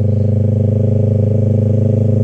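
Yamaha YZF-R3 parallel-twin engine running at a steady cruise, heard from the rider's seat, with an even, unchanging engine note.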